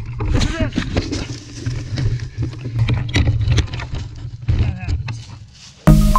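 Wind rumbling on a body-worn action camera's microphone, with crackling and snapping of dry leaves and twigs on a forest trail and a few short wordless voice sounds. Near the end, electronic music cuts in abruptly.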